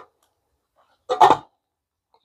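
A brief clatter about a second in as a folding knife is set down on a kitchen scale's stainless steel platform.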